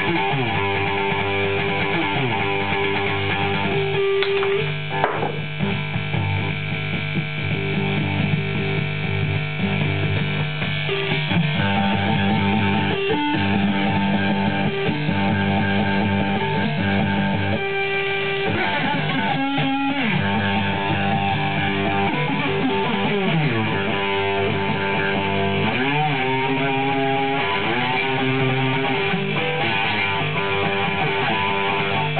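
Homemade electric diddley bow played through an amplifier: its single string is plucked and slid, giving sustained notes with gliding bends between them. The tone is not fully clean, which the builder puts down to the pickup wires and pickup height.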